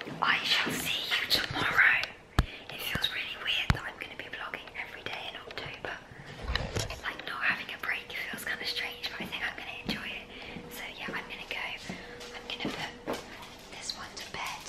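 A young woman whispering. Two sharp clicks come about two and a half and almost four seconds in, and a short low thump about six and a half seconds in.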